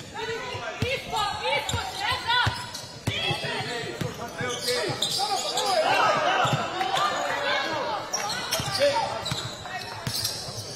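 Basketball dribbled on a hardwood court in a sports hall during live play, with players' voices calling out over it.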